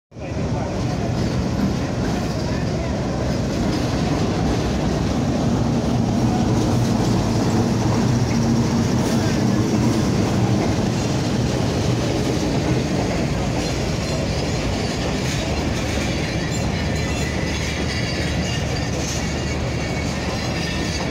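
Pakistan Railways passenger train arriving, its diesel-electric locomotive running as it passes close by, with the wheels rolling along the rails; thin high wheel squeals come in over the last few seconds.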